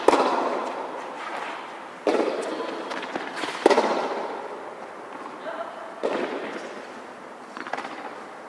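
Tennis balls struck back and forth in a baseline rally on a hard court, four sharp hits about two seconds apart. Each hit rings on with a long echo under the metal roof.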